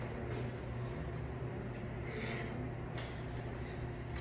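A steady low hum with a few faint short clicks, and a brief soft wet mouth sound a little over two seconds in as lip gloss is put on with a wand applicator.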